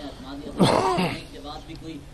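A man clears his throat with a loud, rough cough about half a second in, lasting about half a second.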